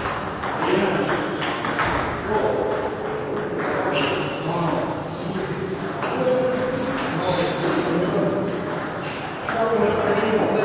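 Table tennis ball repeatedly clicking off bats and the table during rallies, with people talking in the hall.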